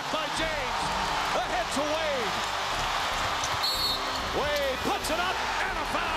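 Basketball game sound: steady crowd noise with sneakers squeaking on the hardwood court and a basketball bouncing. A brief shrill high tone sounds a little past the middle.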